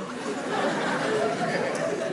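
Studio audience laughing and clapping in a steady wash of sound in response to a comedian's punchline.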